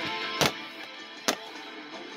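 Plastic wrestling action figures knocking against the toy ring and ladder as they are handled, in a few sharp clacks: about half a second in, just over a second in, and lighter near the end. Quiet background music with guitar plays underneath.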